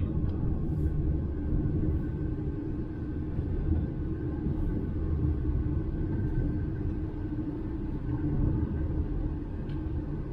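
Steady low rumble of engine and road noise inside the cab of a DAF XF 530 truck on the move.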